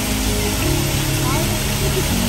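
Steady street traffic noise, with a background music track of held notes underneath.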